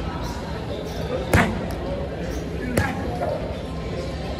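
Two boxing-glove punches landing on a hanging teardrop punching bag, about a second and a half apart, the first the louder.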